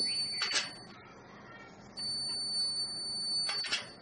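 Homemade gate security alarm sounding a steady high-pitched tone, set off when the metal contact strips on the gate close its circuit. It sounds until about a second in, stops, then rings again from about two seconds in until near the end, with a short burst of noise just before each stop.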